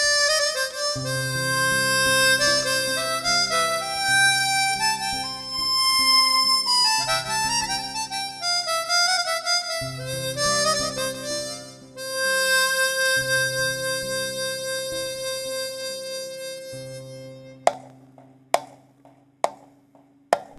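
Harmonica playing a slow, expressive melody line, with bends and held notes, over sustained low accompaniment chords. Near the end the harmonica dies away and a few sharp percussive clicks sound.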